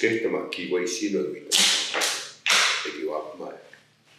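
A man speaking in an Indigenous language, with several sharp hissing consonants, falling silent just before the end.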